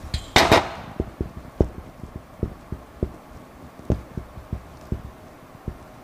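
Dry-erase marker writing Chinese characters on a whiteboard: a scratchy stroke about half a second in, then a run of light, irregular taps of the marker against the board, about three a second.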